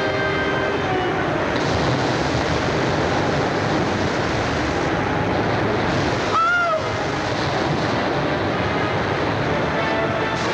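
Film soundtrack of a boat running river rapids: a steady rush of churning white water, with some music underneath near the start. About six seconds in, a short high call rises and falls within half a second.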